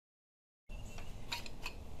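Dead silence, then a few light metallic clicks as the engine's cylinder block is worked up its studs off the crankcase, about a second and a half in.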